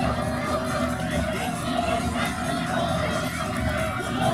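Steady music-like sound mixed with crowd cheering from the stands during a race.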